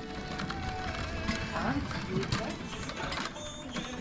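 Supermarket background: faint store music and distant voices over a steady hubbub.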